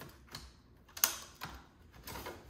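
Hard drive caddy being unlatched and slid out of a Dell PowerEdge R320's front drive bay: a few sharp clicks and rattles, the loudest about a second in.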